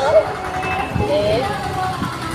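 People talking, with brief voiced phrases, over a steady background of street traffic noise.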